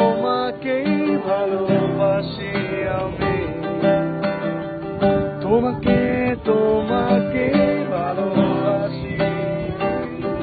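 Acoustic guitar strummed in a steady rhythm, with voices singing along.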